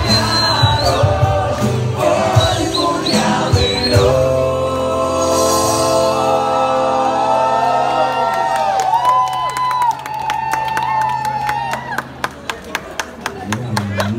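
Live street music: voices singing with guitar accompaniment, loud and sustained. Near the end, handclaps in a steady beat join in.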